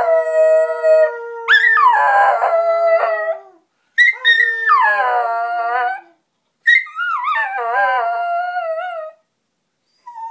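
Miniature schnauzer howling: about four long howls in a row, each starting high and sliding down in pitch, the later ones wavering, with short breaks between them.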